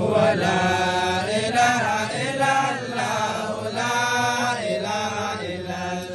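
A voice singing a melodic Islamic religious chant in long, drawn-out phrases. It starts suddenly and loudly.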